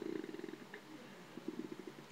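A man's faint creaky-voiced hesitation: a drawn-out vocal-fry "uh" trailing off, with a second short one about a second and a half in.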